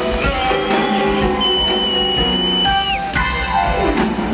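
Live jazz combo playing, with drum kit, upright bass and saxophone. A long high note is held and bent down about three seconds in, followed by a falling slide just before the end.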